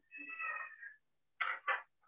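A cat meowing: one drawn-out, high-pitched meow lasting about a second, then two short calls near the end.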